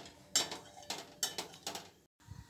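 Metal spatula scraping and knocking against a metal kadhai while stirring thick masala paste as it fries, about five strokes in two seconds.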